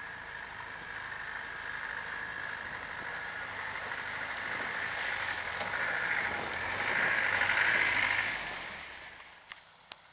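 Land Rover Defender driving through a deep flooded puddle, its engine running and water sloshing and splashing around the wheels. It grows louder as it passes close, is loudest about seven to eight seconds in, then fades, with a couple of sharp clicks near the end.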